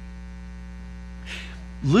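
Steady electrical mains hum from the sound system during a pause in speech; a man starts speaking again near the end.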